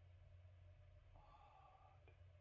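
Near silence: room tone with a low steady hum, and a faint higher tone that comes in about halfway through.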